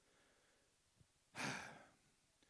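A man's audible breath into a handheld microphone, about half a second long and fading, about a second and a half in; otherwise near silence.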